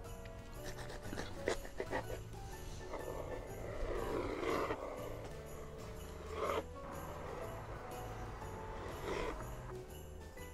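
Quiet background music with steady held notes. Over it come a few short rasping sounds of a large knife cutting through a chocolate-glazed sheet cake onto a wooden cutting board, the longest from about three to five seconds in and shorter ones near six and a half and nine seconds.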